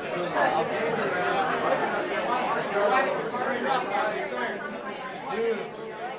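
Many people talking at once: a steady crowd chatter in a large room, with no single voice standing out.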